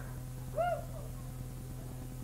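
A single short hoot-like vocal sound from a person, about half a second in, rising then falling in pitch, over a steady low hum.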